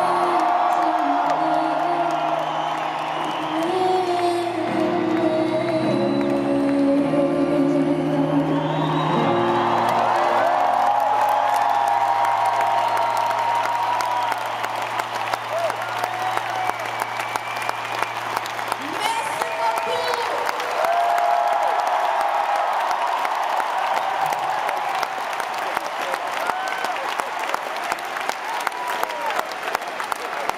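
Live piano and band chords under a woman's singing voice finish about ten seconds in, a low note ringing on for several seconds more; a large stadium crowd cheers and claps, with whoops, through the rest.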